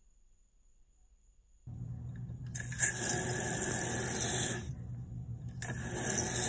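Fluidmaster 400-series toilet fill valve, fitted with a new replacement cap, running as the water is turned back on: a loud hiss of water refilling the tank. The hiss starts a couple of seconds in after near silence, drops away briefly past the middle and starts again near the end.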